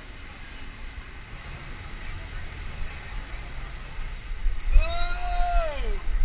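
Wind and road rumble on a helmet-mounted camera's microphone while riding a bicycle in a large group ride. Near the end a loud drawn-out call, held and then falling in pitch, cuts across it.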